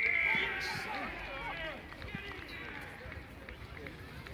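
A referee's whistle ends a long, steady blast about half a second in, over several voices shouting on the pitch. Quieter crowd and player chatter follows.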